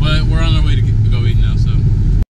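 Steady low rumble of a car's engine and road noise heard inside the cabin while driving, with a man's voice briefly in the first second.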